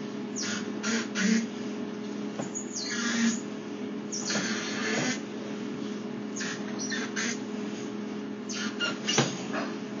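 Sewer inspection camera's push cable being pulled back through a cast-iron drain line: irregular bursts of scraping and rustling over a steady electrical hum from the camera equipment.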